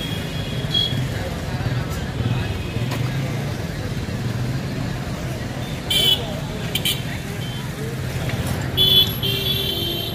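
A vehicle engine runs close by amid street traffic noise with a steady low rumble. Short high horn toots come about six and nine seconds in, over faint voices.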